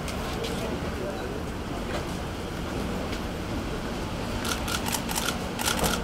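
Camera shutters clicking in quick runs, several cameras firing at once, starting about four and a half seconds in over a steady low street rumble.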